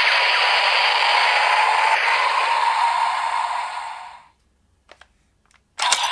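Electronic sound effect played through a DX Kamen Rider transformation belt toy's speaker: a dense, noisy blast that fades out about four seconds in. After a near-silent gap with a couple of faint clicks, another loud sound starts suddenly just before the end.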